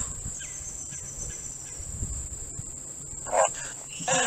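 Insects trilling in one steady high-pitched tone, with a brief faint burst of sound a little over three seconds in.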